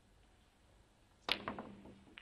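Snooker shot: a sharp click of the cue striking the cue ball and the ball clacking into the black, followed by a few quicker, quieter clicks as the balls run on.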